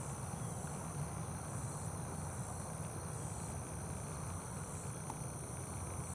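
Steady high-pitched chorus of insects in the pond-side vegetation, holding a constant level with slight shifts, over a low steady rumble.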